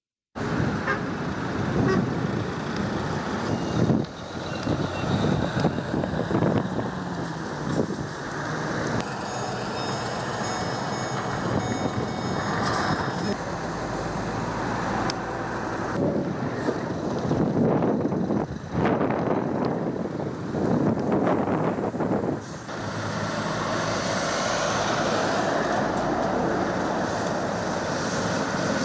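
Road traffic noise from a jam of heavy trucks and lorries, their engines running steadily as they stand and creep along the highway.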